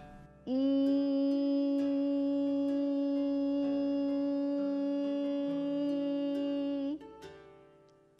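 A woman's voice singing a long 'eee' vowel on one steady pitch, starting about half a second in and held for about six and a half seconds on a single breath, as a breathing-and-voice exercise.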